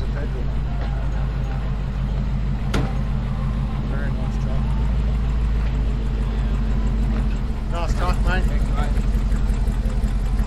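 Vehicle engine running steadily at low revs, close by. There is a single sharp click about three seconds in. The engine note grows a little louder and more pulsing from about seven and a half seconds in, with voices in the background.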